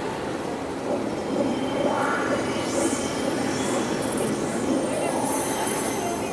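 Pen plotter's drive motors whining as the pen head moves across the paper drawing lines: several short high whines that rise and fall, mostly in the second half, over steady background noise.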